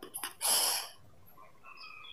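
A brief breathy hiss about half a second in, then faint, short, high bird chirps, several in a loose series.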